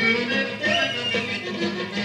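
Greek folk dance music: an instrumental tune with a sliding, ornamented melody over sustained lower notes.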